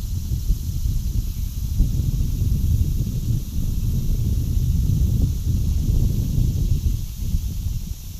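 Wind buffeting an outdoor microphone: a steady low rumble that swells and falls in gusts, with a faint hiss above it.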